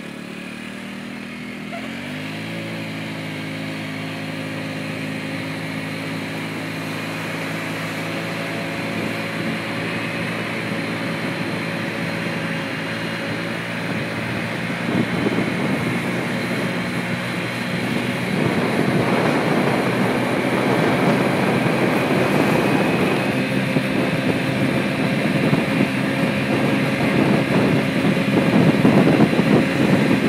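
Honda scooter engine pulling away from a standstill, its pitch rising over the first couple of seconds and then holding steady as the scooter rides on. Wind noise on the microphone builds from about halfway through and grows louder toward the end.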